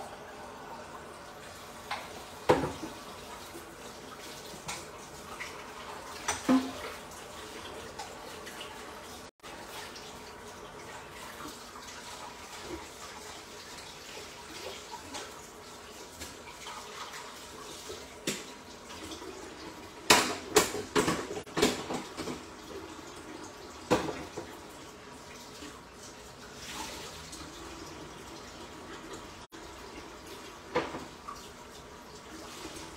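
Kitchen sounds: a steady watery hiss with scattered clinks and clatters of dishes and pans, a quick flurry of them about twenty seconds in.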